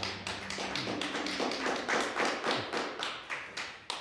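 A quick, even run of light taps or clicks, about six a second. A low note from the music that ends just before dies away in the first second and a half.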